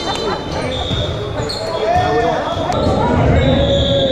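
A volleyball bounced on a hardwood gym floor a few times ahead of a serve, each bounce a short sharp impact, with players' voices echoing in the large hall.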